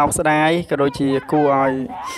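A man's voice speaking, continuing a Khmer voice-over in drawn-out syllables held at a level pitch.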